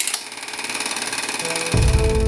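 Film projector running: a loud, rapid mechanical clatter with hiss. Near the end, music comes in with a deep bass hit and held notes.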